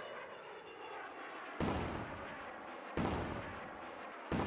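Title-sequence sound effects: a crash dies away, then two sudden booms like cannon shots, about 1.6 and 3 seconds in, each fading out over about a second.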